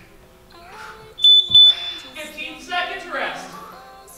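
Two short, high-pitched electronic beeps from a gym interval timer, about a third of a second apart, a little over a second in: the signal that the work interval is over and the rest period begins.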